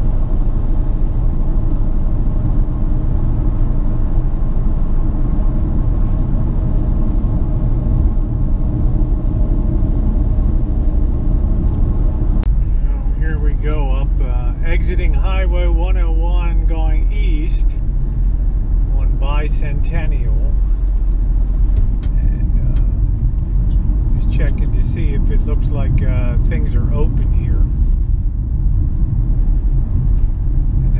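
Steady road and engine noise of a car being driven, heard from inside the cabin as a constant low rumble. From about halfway through, a voice comes and goes over it in a few stretches.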